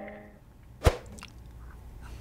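A held musical note fades out, then a single sharp click comes a little under a second in, followed by faint room tone.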